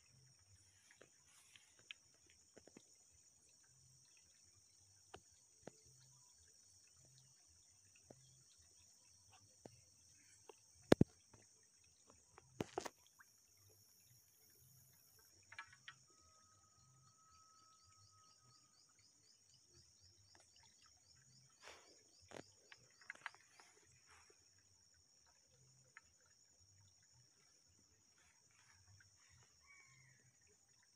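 Insects droning steadily at a high pitch, with scattered faint clicks and two sharp knocks about eleven and thirteen seconds in. A short steady whistle-like tone sounds near the middle.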